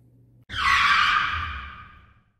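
An outro sound effect: a sudden high hiss that starts about half a second in and fades away over about a second and a half.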